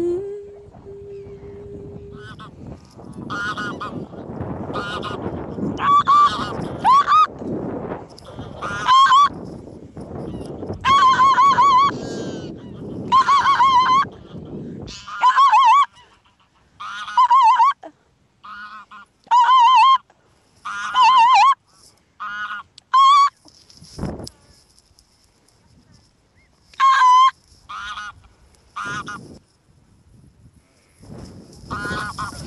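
Geese honking close by, short calls coming about once a second, some in quick pairs, from a few seconds in. A low rushing noise runs under the first half and stops about halfway through.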